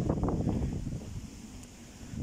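Low wind rumble on the microphone, dying down about a second in.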